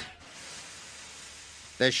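A faint, steady hiss with no tone in it, between narrated lines. Speech starts near the end.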